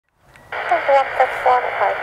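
A voice coming through a radio receiver, thin and narrow-sounding, switching on about half a second in: a transmission heard over a handheld air-band scanner.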